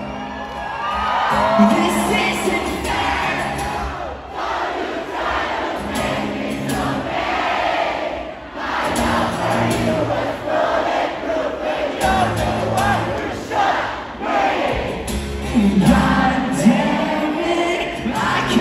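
A concert crowd singing a song together over strummed acoustic guitar chords.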